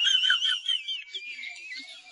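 A high, thin whistle-like tone that wavers, slides lower about a second in, then fades.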